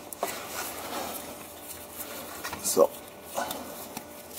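Faint handling noise as a gloved hand works a plastic fill hose into the drive unit's fill hole: light rubbing and small clicks. A short voice sound comes about three seconds in.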